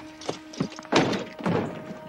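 A few thumps and knocks on wood, about four over a second and a half, the middle two loudest, as a wooden cabin door is opened. A faint held music note sounds underneath.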